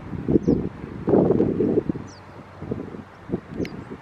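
Wind buffeting the microphone in uneven gusts, a low rumbling that swells and drops away, with a few faint high chirps from small birds.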